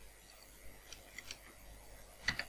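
A few faint, sharp clicks of a computer mouse and keyboard, about a second in.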